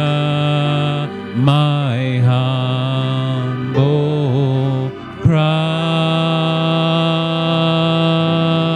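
A man singing a slow worship song into a microphone in long held notes that slide in pitch, with short breaks between phrases about a second in, just before four seconds and about five seconds in.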